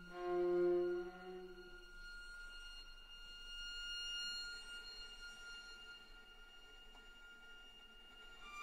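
String quartet playing contemporary music: a loud low bowed note sounds at the start and dies away within about two seconds, followed by quiet, long-held high string tones.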